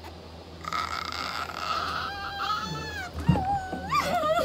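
A young woman's high-pitched, wordless squeal of excitement, held and wavering in pitch, with a short thump about three seconds in.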